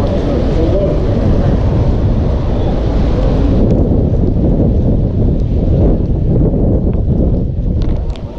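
Wind buffeting an outdoor microphone: a loud, steady, blustery low rumble with indistinct voices under it. The higher hiss thins out about halfway through, leaving a few faint clicks.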